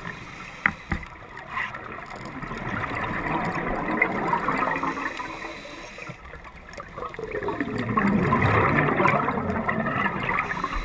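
Underwater bubbling and rushing of a scuba diver's exhaled breath leaving the regulator, swelling twice in a slow breathing rhythm, with two sharp clicks about a second in.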